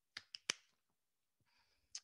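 Three quick, sharp clicks within the first half second, then a faint rustle and one more click near the end, from a plastic water bottle being handled after a drink.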